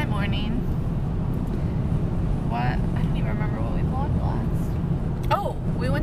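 Steady low road and engine rumble inside a moving car's cabin, with a woman's voice in short snatches at the start, in the middle and near the end.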